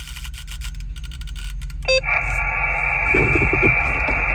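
Xiegu X5105 HF transceiver's speaker hissing and crackling with band noise. About two seconds in a short beep sounds, as the radio goes from AM to USB. From then on the static turns to a narrower, steady hiss.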